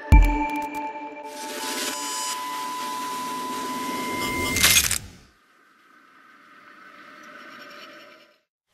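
Intro music with sound effects: a deep hit at the start, then held tones under a swelling rush of noise that builds to a sharp peak and cuts off about five seconds in. A faint sound then rises softly.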